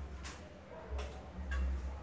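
Three light clicks or snaps in the first second and a half as leafy myrtle sprigs are handled and trimmed for a flower arrangement, with a low rumble underneath.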